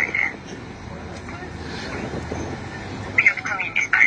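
Indistinct voice over a steady background hiss, with a short burst of speech about three seconds in.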